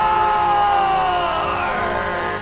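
Hockey play-by-play announcer's drawn-out goal call, one long shout held on a single high note that sags in pitch toward the end.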